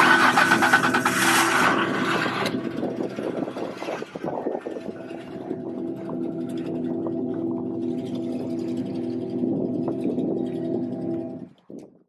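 Car engine with a loud rush of noise in the first two seconds or so, as it starts or revs, then a steady low hum that fades and stops just before the end.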